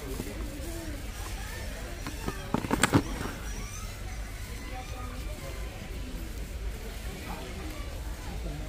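Warehouse store background: a steady low hum with faint chatter of other shoppers, and a brief rattling clatter of several quick knocks about two and a half seconds in.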